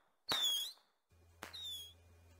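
Fireworks: two sharp pops, each followed by a short whistle that dips slightly in pitch, about a second apart.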